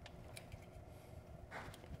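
Near silence with a few faint plastic clicks as the side-mirror wiring connector behind the Cybertruck's door trim is pressed at its release tab and worked loose by hand.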